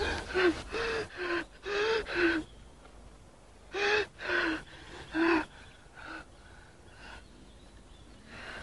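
A wounded man gasping and whimpering in pain: about eight short, pitched cries in two bunches, with a lull between them.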